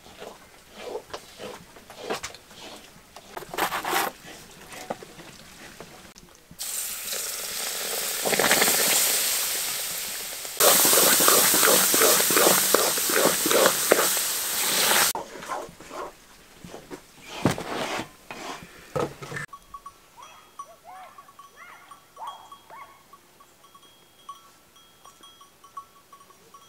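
Knocks and clatter of bread dough being handled on a wooden peel. Then a loud stretch of sizzling with fast scraping as helva is stirred with a wooden spoon in a cast-iron pan. Near the end it gives way to quiet open-air sound with faint sheep calls.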